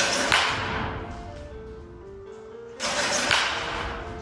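Two swings of a wooden baseball bat, each a sudden whoosh that fades over about a second, the second about three seconds after the first, over background music with a simple melody.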